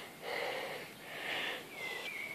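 Two soft breaths close to the microphone, each about half a second long, between counted words.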